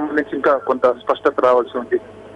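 Speech only: a man talking over a telephone line, his voice thin and cut off above the middle range.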